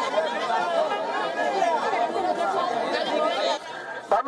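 Several people talking over one another in a close crowd, a steady chatter of overlapping voices that drops in level shortly before the end.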